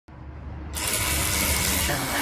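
Handheld cordless pressure washer running, its motor and pump humming low, with the loud steady hiss of the water jet cutting in sharply under a second in as it sprays a car's side window.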